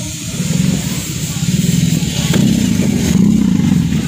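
BMW R18's big boxer twin running through custom slip-on mufflers: a low, pulsing exhaust note, soft rather than loud, that builds as the engine is revved toward the end.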